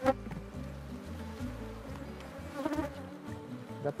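Swarm of Africanized honeybees buzzing around an opened hive, with a sharp wooden knock at the start as a honeycomb frame is set back into the hive box.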